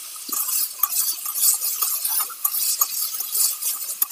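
Potato wedges sizzling in hot oil in a black kadai while a flat metal spatula stirs them, with frequent scraping clicks of metal on the pan.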